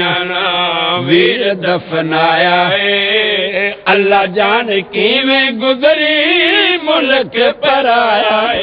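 A man's voice chanting Punjabi elegiac verse in a long, drawn-out melodic recitation through a microphone and loudspeaker, with short pauses for breath.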